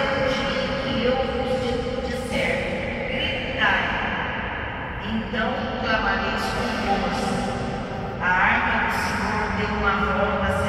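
Slow devotional singing, a voice holding long notes that glide from one to the next, echoing in a large church.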